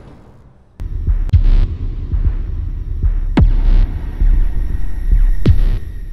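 Logo-intro sound effects: a deep rumbling throb starts about a second in, with sharp hits and two falling sweeps ending in booms, about three and a half and five and a half seconds in.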